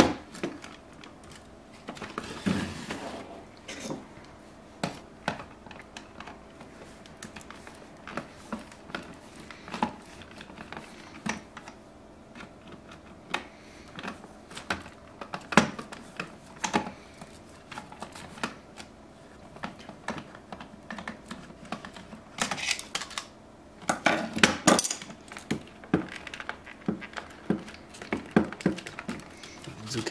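Hands and a screwdriver working on the opened plastic housing and loudspeakers of a portable radio: irregular small clicks and knocks of plastic and metal. Denser clattering comes about two seconds in and again around twenty-three to twenty-five seconds in.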